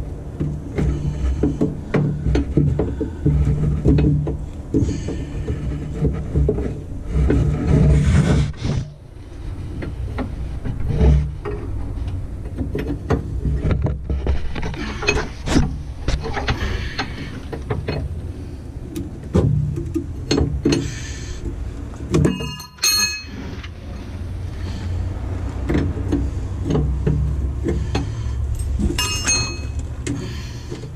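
Hand wrenches clicking and scraping on the power steering hose fittings under a bus as they are worked loose, with clothing rubbing against the microphone. A steady low hum runs underneath.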